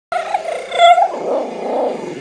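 Small dog vocalizing: a loud, pitched, howl-like call for about the first second, loudest just before a second in, then a rougher, less tuneful sound that fades after the second second.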